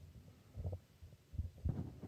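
A few soft, irregular low thumps, the strongest near the end, over faint room hum.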